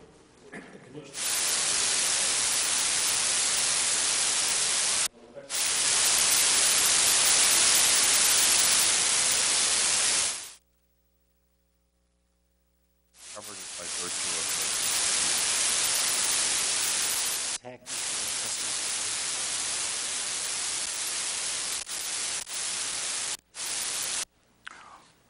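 Loud steady static hiss on the audio feed, cutting in and out abruptly: two long stretches with a dead-silent gap of about two and a half seconds between them, and several short breaks near the end.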